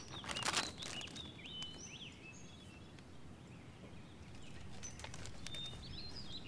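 A plastic snack bag crinkling in a short burst of rustles in the first second, as a hand reaches into it, over a background of small birds chirping.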